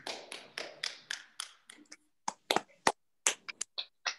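Close handling noise on the recording device: a quick, irregular run of taps and knocks as hands grip and adjust it, with a few sharper, louder knocks in the second half.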